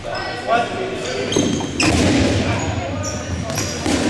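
Dodgeballs thudding off players and bouncing on a hardwood gym floor a few times, the sharpest hit a little before halfway. Players shout, with short high squeaks, in a large echoing hall.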